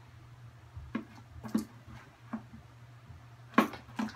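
Metal spoon knocking against a plastic tub while stirring thick slime: about five separate clacks, the loudest near the end. A low steady hum runs underneath.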